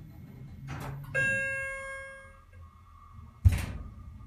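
Elevator's single bell-like arrival chime, one ding that rings out and fades over about a second and a half as the car reaches the second floor. About two seconds later comes a short, loud thump, the loudest sound here.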